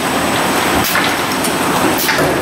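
Hamrick 300D case packer running: a steady mechanical clatter and rumble of the conveyor carrying plastic jugs, with a sharp burst of noise about a second in.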